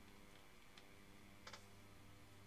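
Near silence: room tone with a low steady hum, and one faint short click about one and a half seconds in.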